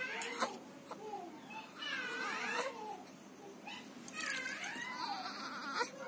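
A young baby fussing in short, wavering whimpering cries, in a few separate bouts: a brief one at the start, a longer one about two seconds in and another about four seconds in.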